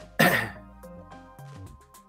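A man clears his throat once, briefly, about a quarter second in, over quiet background music.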